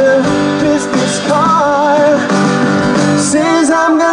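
Live band performing a pop-rock song: singing over upright piano and band accompaniment.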